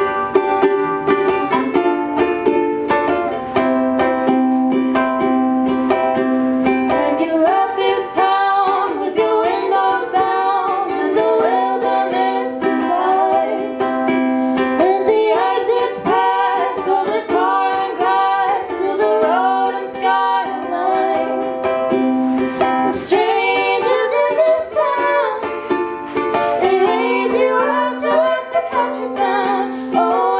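Two female voices singing together to a strummed ukulele, live in a small room. The voices hold long notes for the first several seconds, then move into a busier melody.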